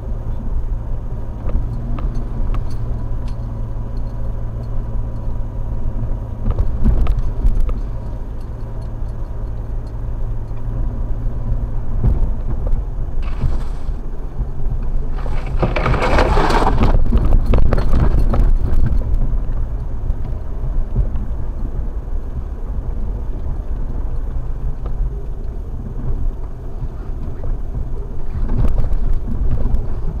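Jeep engine running steadily at low speed on a snowy trail, heard from inside the cab. About halfway through, a loud rushing scrape lasting a few seconds as snow-laden branches brush over the windshield and roof.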